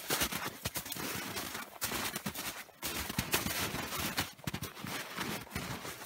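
Footsteps crunching in snow: a steady run of irregular crunches with a couple of short breaks.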